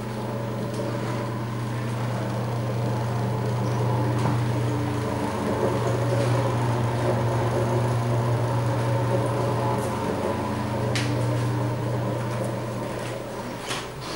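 A ventilation fan running with a steady low hum, louder through the middle and easing off near the end.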